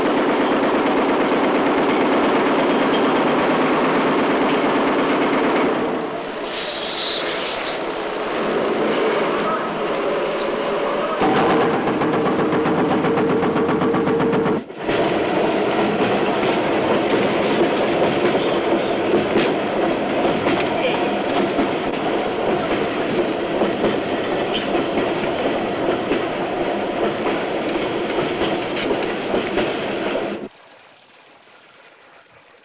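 Loud, continuous rumbling and clattering noise with some steady tones in it, changing abruptly about six and eleven seconds in, with a split-second break near fifteen seconds.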